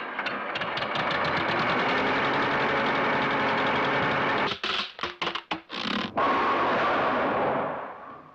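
Cartoon sound effect of a small car motor chattering in a rapid, even rhythm, breaking into several short sputters about four and a half seconds in, then a rushing hiss that fades out near the end.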